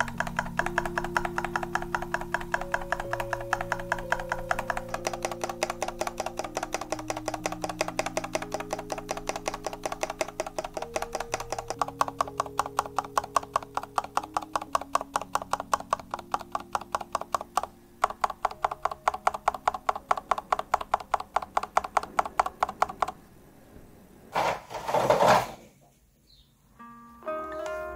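Stabilized keys (Shift, Enter, Backspace) of a LOFREE 1% transparent mechanical keyboard with Kailh Jellyfish switches pressed rapidly and evenly, about four clicks a second, with no stabilizer rattle. Soft background music plays underneath, and a short, louder burst of noise comes near the end after the clicking stops.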